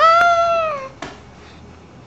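A baby's high-pitched squealing vocalization: one drawn-out note of just under a second that falls in pitch at its end.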